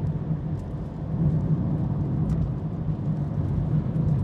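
Aston Martin V12 heard from inside the cabin while cruising: a steady low engine drone with tyre and road noise, no change in revs.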